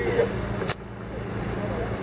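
Low, steady rumble of street traffic during a pause in speech, with a single sharp click near the middle.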